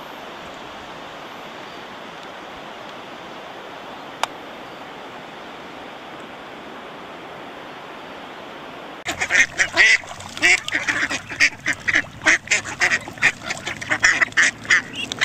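A crowd of ducks quacking loudly and densely, starting abruptly about nine seconds in; before it, only a steady even hiss with a single click.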